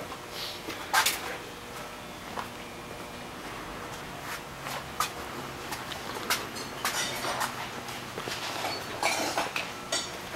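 Footsteps on a shop floor with scattered light knocks and clicks, a louder one about a second in, over a faint steady hum.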